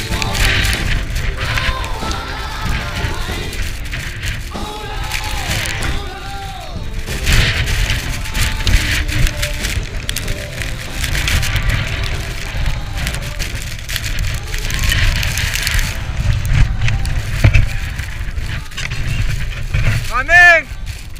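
Wind rumbling and buffeting on the camera microphone, with scattered clicks and clinks, under music that plays throughout.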